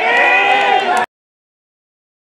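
Several voices shouting at once in loud, overlapping yells as a player is brought down in the penalty area. The shouting cuts off abruptly to dead silence about a second in.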